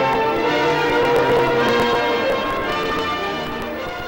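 Bells ringing, many tones overlapping and ringing on, fading down toward the end.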